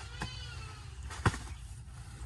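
Sharp knocks of a phawda (spade-hoe) chopping into banana plant stalks, one small and one much louder about a second in. An animal's drawn-out call dies away at the start.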